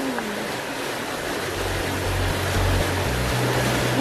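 Steady rushing of water from an indoor rock spring. Low bass notes of background music come in about a second and a half in.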